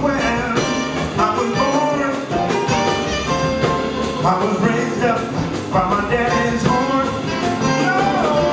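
Live jazz band: a man singing into a microphone, backed by upright bass and the rest of the band.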